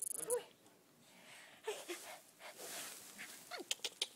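A baby's faint grunts and breathing as he strains on his back, with a short falling whimper near the end and a few soft clicks.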